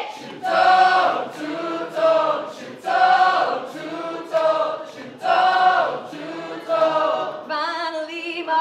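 Several voices singing together in a live pop sing-along, a short held phrase about once a second.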